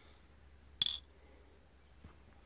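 A single sharp clink about a second in: a small gold specimen dropped by hand into the plastic dish on a pocket digital scale.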